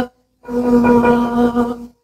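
Arabic vocal music from an archival recording of an Egyptian musical play: after a brief silence, one long steady note is held for about a second and a half, then breaks off shortly before the end.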